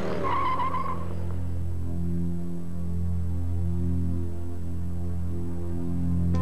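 A van's tyres squeal briefly in the first second as it pulls away, over a steady low hum that carries on after the squeal stops.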